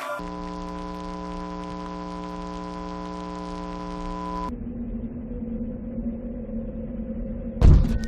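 A held, buzzy electronic tone rich in overtones, lasting about four seconds and cutting off abruptly, then a lower steady hum with a hiss behind it. A loud thump near the end.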